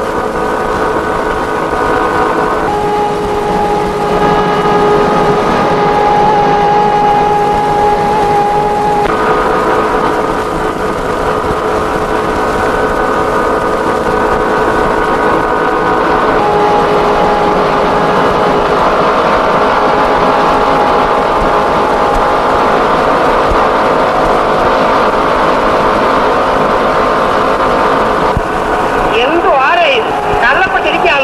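Textile-mill machinery running with a steady, many-toned hum. The mix of tones shifts abruptly a few times, about 3, 9, 16 and 28 seconds in.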